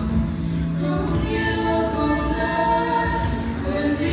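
Three young female voices, a lead singer and two background singers, singing a gospel song into microphones, holding long sustained notes in harmony.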